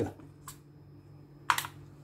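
Small bowls being set down on a tabletop: a faint click, then a sharper, louder click about a second later.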